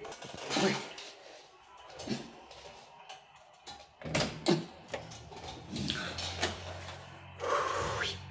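Steel apartment front door being unlocked and opened: sharp clicks and clunks of the handle and lock about four seconds in, among scattered knocks, with a low steady hum underneath from then on.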